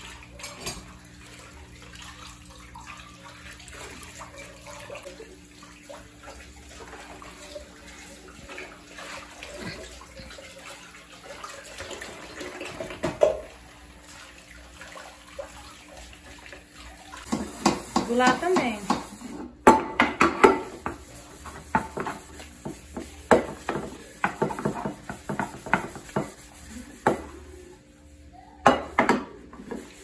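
Dishes being washed by hand at a kitchen sink: tap water running while a glass is rinsed, then plates and a pot scrubbed with a soapy sponge. From about halfway the crockery and pots knock and scrape louder and more often.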